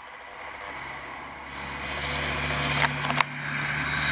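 A motor vehicle's engine running with a low, steady drone that grows louder over the last couple of seconds as it comes closer, with two brief clicks near the end.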